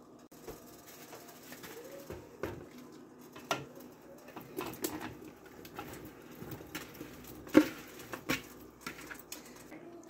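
Chopped plums being tipped into a stock pot of boiling barbecue sauce: irregular soft plops, splashes and knocks, the sharpest near the end, over the low bubbling of the sauce at a boil.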